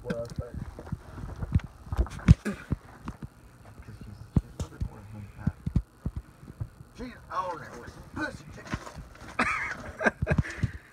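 Scattered clicks and knocks of hand work under a truck, with muffled talk about seven and nine seconds in.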